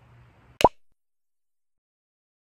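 Faint room tone, then a single short pop about half a second in, followed by dead digital silence.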